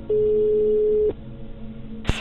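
A single electronic beep: one steady, mid-pitched pure tone lasting about a second, over faint background sound.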